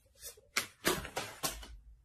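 Tarot cards being shuffled and a card drawn from the deck: several short, crisp papery rustles in quick succession.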